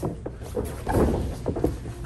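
A run of dull thumps and scuffs of two grapplers' bodies moving on a padded mat during a scramble, loudest about a second in.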